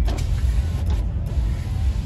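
The 6.6 L Duramax V8 turbo-diesel idling, a steady low rumble heard inside the cab, with the fainter whir of a power window motor running.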